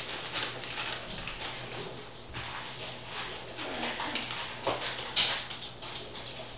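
Paper or plastic packaging being handled, crinkling in short, irregular crackles, with the sharpest crackle about five seconds in.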